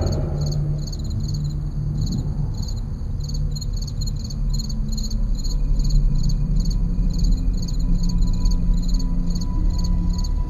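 Crickets chirping in a steady, evenly repeating rhythm, over a low sustained drone of background music.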